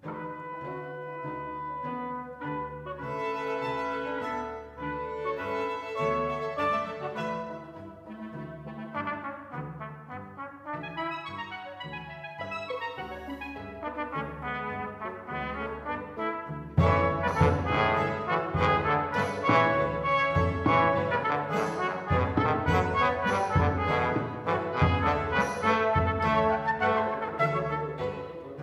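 A small chamber ensemble of brass, woodwinds, violin, double bass and percussion playing an instrumental passage with the trumpet and trombone to the fore. About two-thirds of the way through it suddenly grows louder, with sharp drum strokes, and it tails off near the end.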